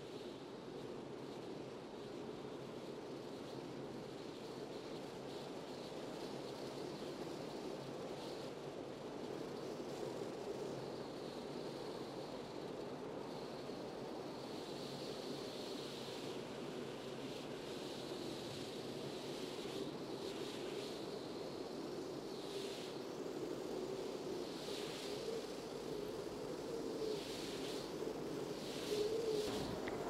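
Quiet, steady room noise with a faint hiss, and from about halfway through, soft intermittent brushing and rustling as latex-gloved hands press and handle the lower leg and bandaged foot.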